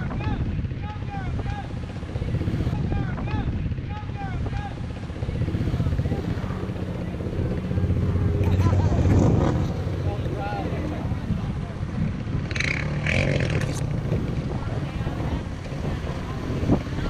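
ATV and truck engines running and revving in a mud pit, the loudest rev about eight to nine seconds in, with people's voices in the background.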